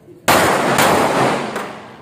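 Semi-automatic pistols firing on an outdoor range: about three loud shots a little over half a second apart, the first about a quarter-second in, each trailing off in a long echo.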